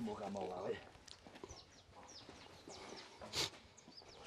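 Faint corral sounds around a Holstein calf roped down on its side: a short, low voice-like sound at the start, thin bird chirps, and a brief scuffing rustle about three and a half seconds in.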